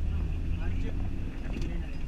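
Steady low rumble of a passenger van's engine and road noise heard from inside the cabin while it drives, with passengers' voices over it.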